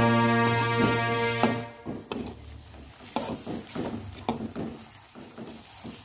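Background music with held notes for the first couple of seconds, then irregular clinks and scrapes of a metal spoon stirring vegetables in a metal wok.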